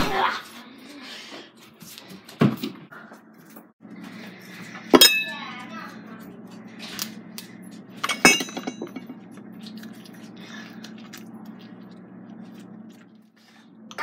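Kitchenware clinking as things are handled at a kitchen counter: scattered sharp clicks and knocks. The two loudest are metallic clinks that ring briefly, about five and eight seconds in, over a steady low hum.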